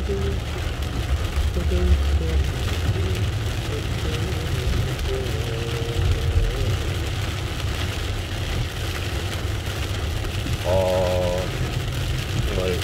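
Heavy rain pelting a taxi's roof and windshield, heard from inside the cabin over the steady rumble of the engine and tyres on the wet road. Near the end a brief wavering tone, like a voice or radio, rises over the noise.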